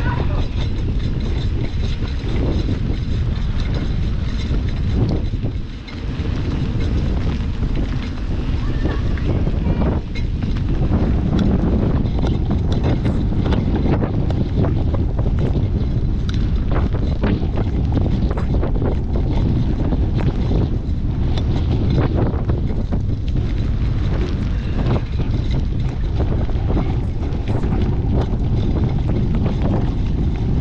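Wind buffeting the microphone of a camera on a mountain bike riding fast downhill on a dirt road, a loud steady rush, with scattered clicks and rattles from the tyres and bike over the rough ground.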